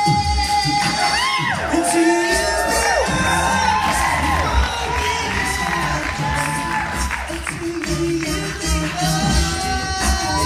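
Male a cappella group singing live, with a bass voice and vocal percussion keeping the groove under the harmonies. A held high note ends about half a second in, and then the audience cheers and whoops over the singing.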